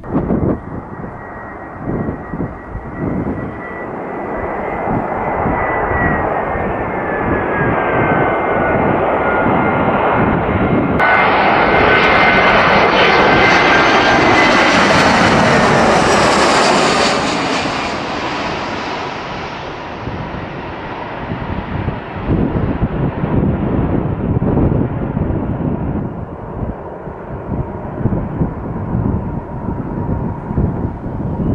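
Jet engines of an Airbus A320-family airliner whining as it flies in low on approach, the whine gliding in pitch and swelling to a peak about halfway through before fading. A rougher, gusty rumble takes over in the last seconds as it touches down on the runway.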